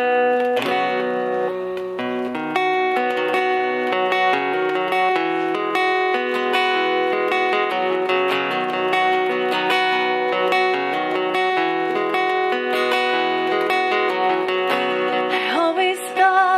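Acoustic guitar playing a song's instrumental intro, notes picked in a steady, flowing pattern. A woman's voice starts singing at the very end.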